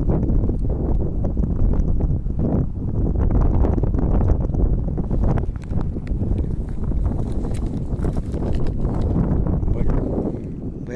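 Footsteps crunching and rustling through dry cereal stubble, an irregular run of short crackles, over steady wind buffeting the microphone.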